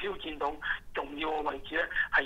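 A man speaking Cantonese over a telephone line, his voice thin and cut off above the middle range.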